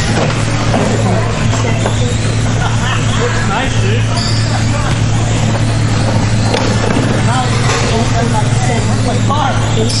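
Indistinct voices in a large hall over a steady low hum.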